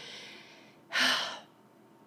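A woman's breath between phrases: a faint out-breath fading away, then one quick, audible in-breath about a second in.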